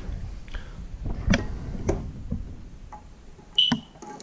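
Hands working the plastic wire-spool holder and its retaining knob on a MIG welder: a few sharp clicks and knocks over a low handling rumble, with a short high tone about three and a half seconds in.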